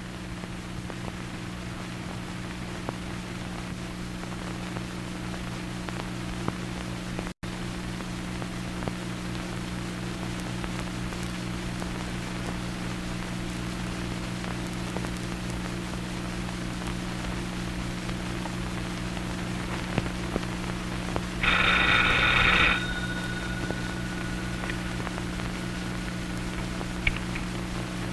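Steady hiss and hum of an old film soundtrack. About three-quarters of the way in, a telephone bell rings once for about a second, its tone lingering for a few seconds after.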